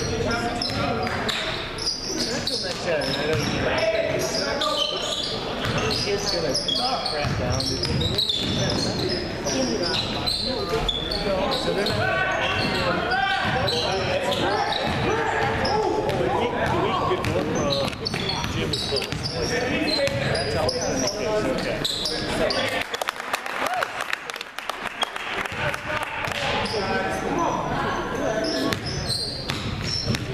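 Basketball dribbled on a hardwood gym floor, bouncing again and again, under the voices of players and spectators echoing in the gym.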